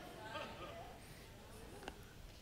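Faint, distant voices in a large room: a few brief low murmurs, with one small click shortly before the end.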